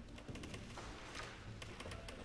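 A hush with the strings barely sounding: a handful of faint, irregular clicks and taps over quiet hall noise.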